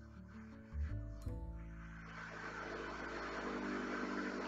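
Soft background music of held notes over a low bass line, the chord changing about a second in.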